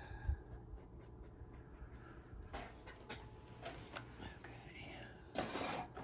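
Faint scratchy rubbing of pastel being worked onto sanded pastel paper in short strokes, with a louder breathy rush near the end.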